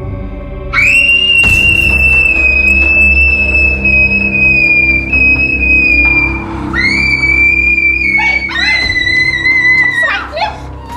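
A girl screaming in fright: three long, high-pitched screams, the first held about five seconds and each later one a little lower, over a music score with a steady low drone.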